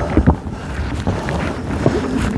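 Footsteps thudding on wooden stair treads as a hiker climbs, with a steady rumble of wind on the microphone behind them.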